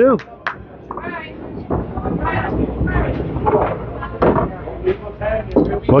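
Candlepin bowling alley sounds: a low, continuous rumble of balls rolling on the wooden lanes, with a few sharp knocks of balls and pins, under background chatter.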